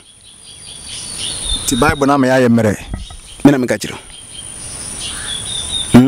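Insects in surrounding vegetation trilling steadily at one high pitch, with faint chirps above it; a man's voice speaks two short phrases in the middle.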